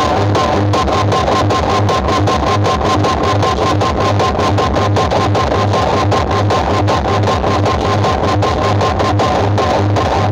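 Guitar-led music played very loud through large outdoor PA speaker stacks, with a heavy pulsing bass beat.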